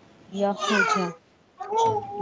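A person's voice saying a short phrase of about four syllables, lasting about a second, with another voice starting up near the end.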